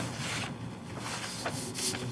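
Soft rustling and rubbing noise picked up by a participant's microphone on a video call, with a few brief louder rustles.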